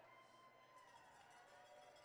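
Faint music, barely above silence, with a few steady held notes that slowly grow louder.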